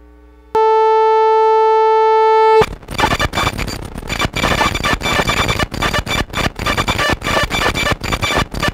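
Circuit-bent Yamaha PSS-9 Portasound keyboard holding one steady buzzy electronic note for about two seconds. It then crashes into harsh, stuttering glitch noise broken by frequent dropouts, the crash that comes from starving the circuit's voltage with a bent-in pot.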